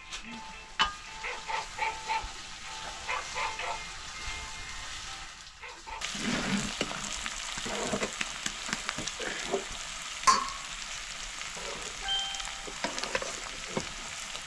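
Curry frying in hot oil in a pan while being stirred, with sharp clinks of the utensil. About six seconds in, a louder sizzle starts suddenly and continues to the end.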